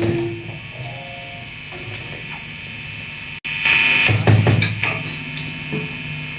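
Lo-fi punk demo tape between songs: the loud band stops and a steady amplifier hum remains with a few stray pitched guitar notes. About three and a half seconds in, the tape drops out for an instant, then a louder, rough burst of band noise starts up and fades back to the hum.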